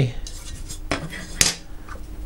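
A few light metallic clicks and knocks as the mini PC's sheet-metal drive bay bracket is handled and set down, the sharpest about one and a half seconds in.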